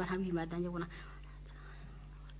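Speech: a voice finishing a phrase in the first second, then a pause with only a steady low hum.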